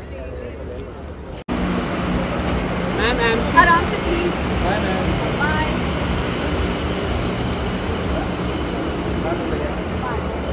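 Steady outdoor street noise with traffic and a constant low hum, and scattered voices of photographers calling out. It jumps louder at a cut about a second and a half in.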